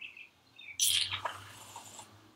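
Aerosol can of whipped curl mousse hissing as foam is dispensed into a palm: a short burst about a second in that trails off. A few faint high chirps come just before it.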